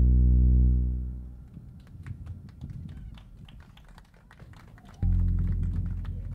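Live electronic jazz: a held deep synthesizer bass note fades out, leaving a few seconds of sparse, quiet clicks and taps, then a new deep bass note comes in suddenly about five seconds in and slowly dies away.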